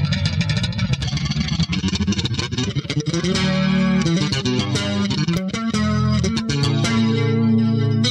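Electric bass guitar played solo: it starts abruptly with a quick run of notes, then moves to longer held notes from about three seconds in.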